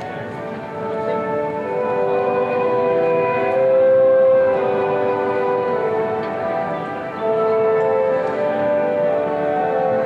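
A national anthem in an orchestral arrangement, slow and stately, with long held chords that swell and fall.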